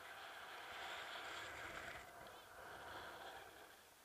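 Faint rush of air past a head-mounted camera as a rope jumper swings on the rope, swelling about a second in and easing off after about two seconds.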